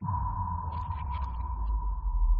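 Transition sound effect: a steady high tone held over a deep rumble, with faint glittering ticks above it. It cuts in suddenly.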